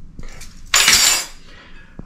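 A metal spoon clinking and scraping against dishware as it is set down, a loud clatter of about half a second near the middle, after a couple of light clicks.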